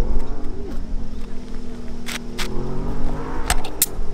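A low engine hum, drifting slightly up and down in pitch, with a few sharp clicks, two about halfway and two near the end, from work on the shingles.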